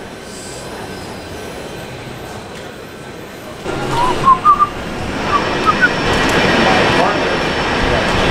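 Steady background noise of a large airport terminal, growing louder about three and a half seconds in, with a few short high chirps soon after.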